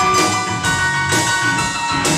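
A live rock band playing: a drum kit keeps a steady beat of about two hits a second under electric guitars, bass and keyboard.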